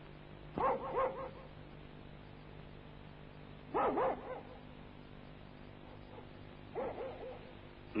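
A dog barking in three short bouts of two or three barks each, about three seconds apart, over a faint steady hum.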